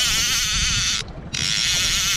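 Line-counter trolling reel being cranked to bring in a hooked fish: a steady whirring buzz from its gears, with a short pause a little after one second in before the cranking resumes.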